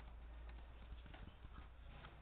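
Faint, irregular clicks of a computer keyboard and mouse over a low steady hum.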